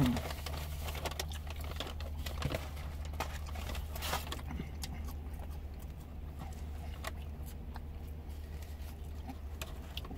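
A person chewing a mouthful of burger close to the microphone: small irregular wet clicks and smacks of the mouth, over a steady low hum.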